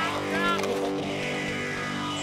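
Film soundtrack music holding a steady low chord, with a brief voice sound about half a second in.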